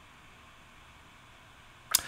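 Near silence (faint room tone), then one short, sharp click near the end.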